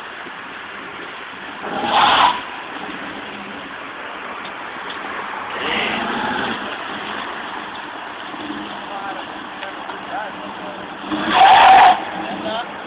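Convertible Chevrolet Camaro doing a burnout, its engine running and tyres spinning on the pavement in a steady rush, with louder bursts about two seconds in and just before the end.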